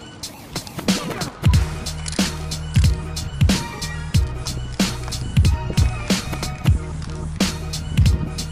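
Instrumental music track with a steady beat: a heavy kick drum and a bass line that come in about one and a half seconds in, with sharp snare and hi-hat hits over them.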